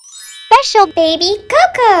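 A quick rising sparkle of chimes, then a child's voice calls out a few bright words with big swoops in pitch, as a logo jingle.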